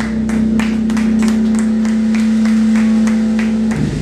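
A rock band's final note ringing out steadily from the amplifiers while a small audience claps; the held note stops just before the end.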